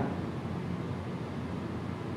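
Steady room tone: a low hum with an even hiss, from the hall's air conditioning.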